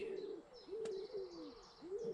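A pigeon cooing: a run of short, low coos rising and falling in pitch, about one every half second. Faint small-bird chirping sits above it, and there is one short click just under a second in.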